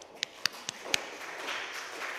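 Papers handled close to a lectern microphone: four quick taps in the first second, then a rustling that carries on.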